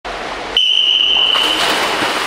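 A long, steady, high start-signal tone begins about half a second in. About a second later comes the rushing splash of a backstroke start as the swimmer pushes off the pool wall.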